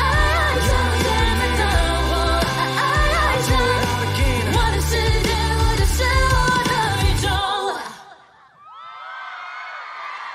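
Live Mandopop song: a woman singing over a backing track with a heavy bass beat, which stops abruptly about seven and a half seconds in. After a moment's drop, a large crowd cheers and screams.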